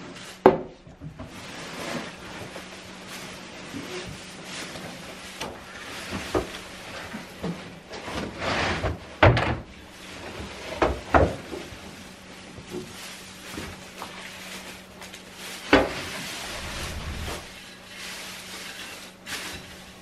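A plastic Rubbermaid cart of hay being tipped out and the hay forked about on a stall floor: scattered knocks and bangs from the cart and tools, with stretches of dry hay rustling.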